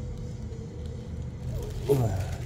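Steady low background rumble with a faint constant hum, like distant traffic or machinery, and a brief "ừ" from a man's voice at the very end.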